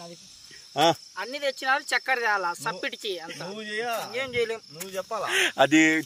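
Crickets chirping steadily, a constant high-pitched trill, with men talking over it from about a second in.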